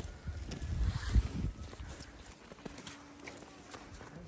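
Footsteps on a slushy, snow-covered road, with several low thuds in the first second and a half, then quieter.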